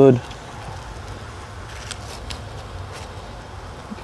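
Open wood fire burning under the cooking coconut shells: a steady hiss with a few faint crackles.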